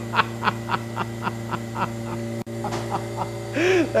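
A man laughing through pain in a long pulsing fit, about four or five breathy bursts a second, slowly tapering off, with a short voiced 'oh' near the end. He has just hurt his finger. A steady hum from lab equipment runs underneath.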